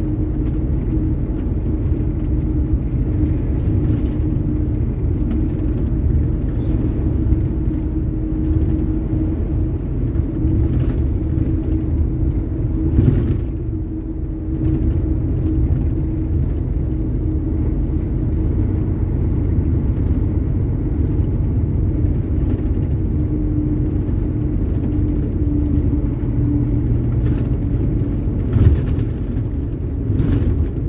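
Steady low engine and road rumble of a truck driving on the highway, heard from inside the cab, with a faint steady tone that comes and goes. A couple of brief knocks, about halfway and near the end.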